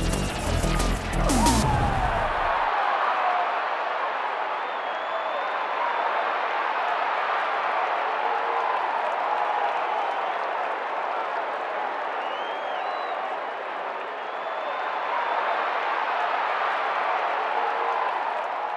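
Electronic music with a heavy beat stops about two seconds in, giving way to steady football-stadium crowd noise with a few faint high whistles.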